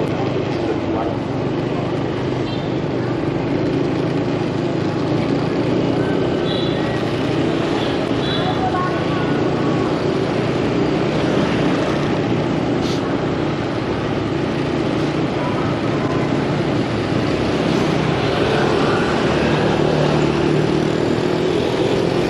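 Motorbike engine running steadily while riding down a city street, with road and wind noise at an even level.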